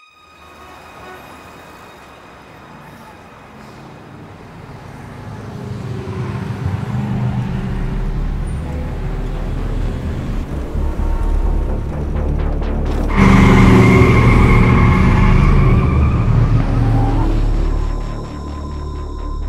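Road traffic noise with a low rumble, fading in and building steadily. It grows suddenly louder about two-thirds of the way through, with a loud vehicle sound carrying held tones, and drops away at the end.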